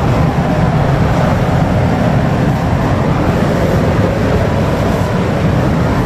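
Paint spray booth's ventilation running: a steady, loud rush of air, heaviest in the low end.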